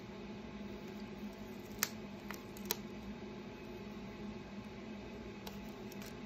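Masking transfer tape being picked and peeled off a laser-scored painted plywood round with a weeding tool: a few faint sharp clicks, three close together about two seconds in and one more near the end, over a steady low hum.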